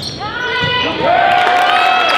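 Game sounds on a hardwood gym floor: basketball shoes squeak in short gliding chirps, one drawn out for over a second in the second half, with a few sharp ball bounces.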